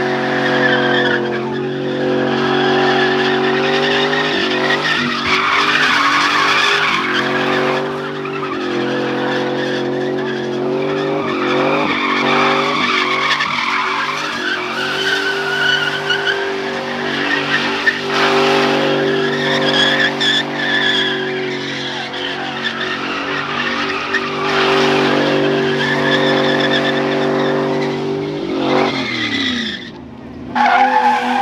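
Chevrolet Silverado pickup doing donuts, its engine held at steady high revs with a few brief dips while the spinning rear tyres screech. Near the end the revs drop away.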